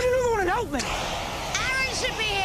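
A high-pitched, wordless vocal cry that rises and falls over about the first second, then shorter high vocal sounds near the end, over a steady hiss.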